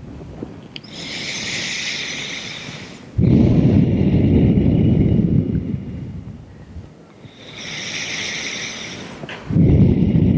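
Slow, deep breathing close to the microphone, two breath cycles. A hissing inhale comes about a second in, then a long, louder exhale from about three seconds in. Another inhale follows, and the next exhale starts near the end.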